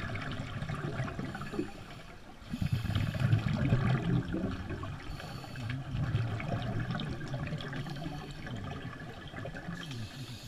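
Scuba regulators' exhaled bubbles gurgling and rushing, heard muffled underwater, swelling in louder surges a few seconds in and again past the middle as the divers breathe out.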